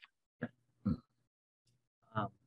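A person's voice: two short murmured sounds about half a second apart, with dead silence around them.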